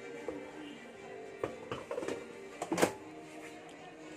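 Background music with a few light knocks, and a sharp plastic clack about three seconds in as the air fryer's basket is handled.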